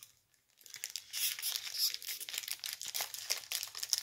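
Foil trading-card pack wrapper being crinkled and torn, an irregular crackling rustle that starts about half a second in.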